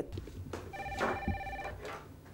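Desk telephone ringing: a single electronic ring of steady tones, about a second long, starting a little before the middle.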